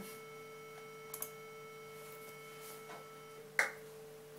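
A steady 440 Hz sine test tone played through a solid-state distortion pedal, clipped into a buzzy tone with strong odd-order harmonics. Near the end the harmonics drop away, leaving a clean, pure sine tone, and a sharp click follows. There is also a faint click about a second in.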